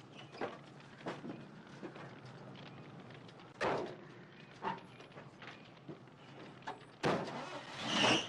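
Clunks and knocks of people scrambling into an old Chevrolet pickup truck's cab, the loudest about three and a half seconds in. About seven seconds in, a louder steady noise starts and builds to the end.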